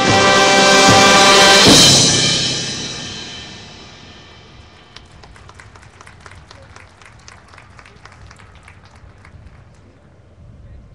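A high school marching band holds a loud sustained chord that swells to a peak with a cymbal crash about two seconds in, then dies away over the next couple of seconds. After that, only faint, scattered light taps are heard.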